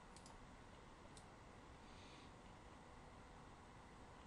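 Near silence: room tone with a few faint computer-mouse clicks, two close together at the start and one more about a second in.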